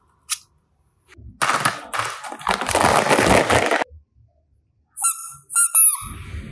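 Small plastic toys being handled: a click, then a couple of seconds of rustling, scraping plastic noise. Near the end comes a quick run of short, high squeaks, each falling in pitch.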